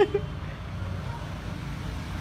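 Steady low rumble of road traffic on a street.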